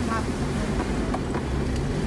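Car engine and tyres on a rough dirt track, heard from inside the cabin as a steady low rumble, with a couple of light knocks about a second in.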